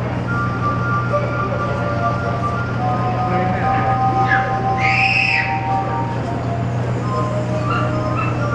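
Glass harp: water-tuned wine glasses rubbed on their rims with the fingertips, sounding long, pure, overlapping notes in a slow melody. A short high cry cuts across the notes about five seconds in.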